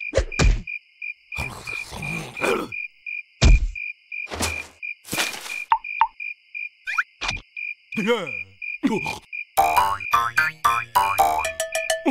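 Cartoon soundtrack over a steady night chorus of chirping insects or frogs, about four pulses a second. Short comic sound effects cut in over it: knocks, thuds and swishes. From about eight seconds in come the larva's wordless, pitch-gliding vocal noises.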